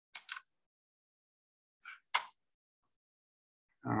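Two pairs of short, sharp clicks, one pair near the start and another about two seconds in, from a computer being worked to share the screen over a video call.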